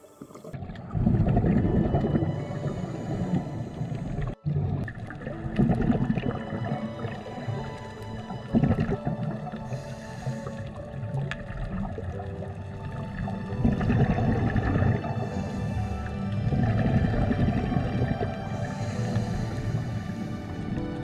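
Background music with sustained, slow-moving notes and a brief dropout about four seconds in.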